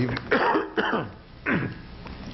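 A man coughing, about three coughs in the first second and a half.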